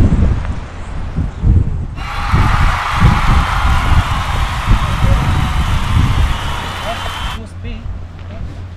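Wind buffeting the microphone with a gusty low rumble, and faint voices in the background. About two seconds in a steady hiss with faint high tones starts suddenly, and it cuts off suddenly near the end.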